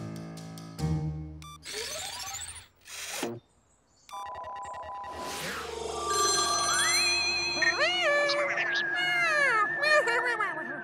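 Cartoon soundtrack: music with a steady beat, then rising sweep effects and a brief near silence, then a telephone ringing and a high, wordless voice that swoops up and down in pitch.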